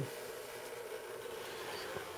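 Faint steady room tone with a low hum; no distinct sound events.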